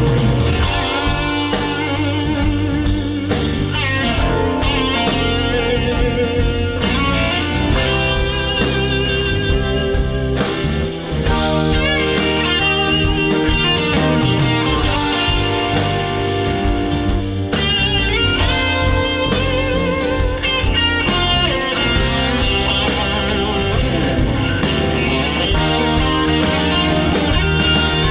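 Live rock band playing with the guitars to the fore: electric and acoustic guitars, bass, keyboards and drum kit, steady and loud throughout.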